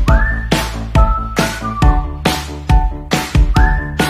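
Upbeat background music: a whistled melody over a steady drum beat, in an instrumental stretch of a children's song about shopping at the supermarket.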